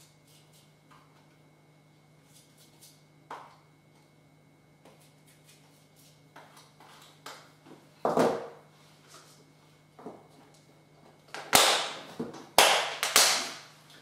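Light taps of a tool scraping royal icing, then knocks and clatters as a plastic tub and utensils are set down on a table, loudest in a quick cluster of three or four sharp knocks near the end as the tub is handled and closed.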